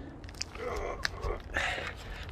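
Plastic wrapping on a heavy roll of TPO roofing membrane crinkling and rustling as it is gripped and heaved, with a couple of sharp clicks.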